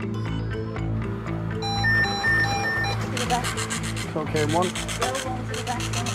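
A bench-top drug trace detector sounds four quick beeps, an alarm for a positive cocaine reading. Its built-in printer then rasps out the result slip in a rapid, buzzing rhythm. Background music plays throughout.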